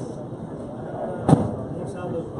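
A single sharp smack of a gloved hand striking a rubber handball, a little over a second in, with a fainter tick near the end as the ball meets the front wall. People talk in the background.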